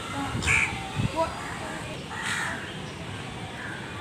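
A crow cawing twice, once about half a second in and again past the two-second mark, harsh calls over children's voices.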